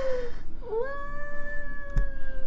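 A woman's high-pitched, drawn-out "ooooh" of delight: a short falling cry, then a long, steady, held note from just under a second in.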